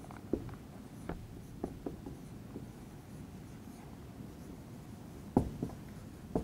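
Marker pen writing on a whiteboard: a few short, faint strokes in the first two seconds, a pause, then sharper strokes near the end.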